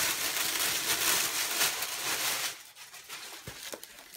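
Clear plastic packaging bag crinkling and rustling as it is handled and pulled open, dying down about two and a half seconds in.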